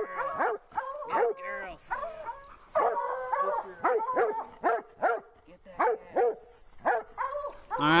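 Hunting hound barking and yelping in a rapid run of short, high calls, roughly two a second, some bending in pitch like whines, as it bays over a freshly killed mountain lion.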